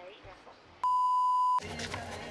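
Phone call going to voicemail: a single steady beep tone starts about a second in and lasts under a second, then gives way abruptly to rustling noise.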